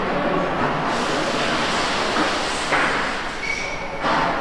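Steady machinery noise of a factory assembly hall, with a short thin high whine near the end.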